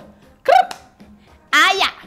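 A woman's short vocal exclamations while dancing: a brief call about half a second in and a longer one that glides in pitch about a second later.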